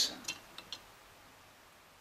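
A few faint, light metallic clicks in the first second as an aluminium IF transformer shield can is worked off its interlocking tabs on a tube receiver chassis, then near silence.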